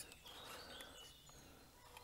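Near silence: faint outdoor background with a few faint, short high chirps from distant birds.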